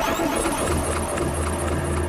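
Produced sound-effect bed in a radio show intro: a low, steady engine-like drone with a thin high-pitched whine above it, after a short rising sweep at the start.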